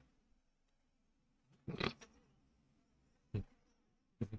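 A near-quiet room broken by a man's short breathy laugh about two seconds in, and a brief puff of breath near the end.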